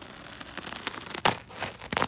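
Bubble wrap and brown packing tape crinkling and crackling as the tape is slit with a small blade and the wrap is handled: a stream of small crackles, with louder rustles about a second in and near the end.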